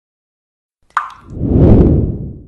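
Logo sound effect: a sudden water-drop plop about a second in, then a low swell of noise that builds and fades away.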